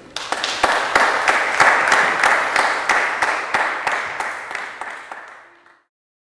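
Audience applauding: a burst of clapping starts just after the opening, is loudest about two seconds in, then dies away over the last couple of seconds.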